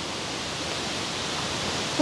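Steady rushing water of Saeng Chan Waterfall running high, swelling a little louder toward the end.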